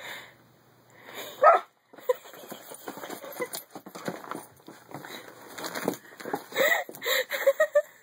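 A puppy spinning after its own tail and biting at it: scrabbling and scuffling on the carpet from about two seconds in, with short whimpers about a second and a half in and again near the end.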